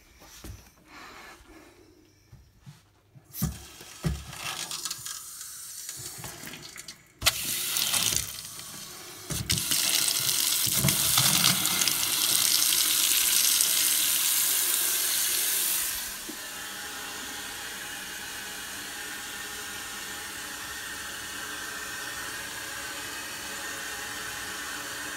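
Water running from a newly installed kitchen faucet into a stainless steel sink, turned on about seven seconds in after a few faint handling knocks, while the new connections are tested for leaks. The flow is loudest through the middle, then drops to a quieter steady hiss from about sixteen seconds in.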